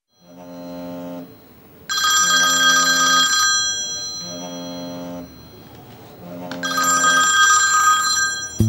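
Mobile phone ringtone ringing: a musical phrase repeating about every two seconds, with a brighter chiming layer coming in about two seconds in and again near the end.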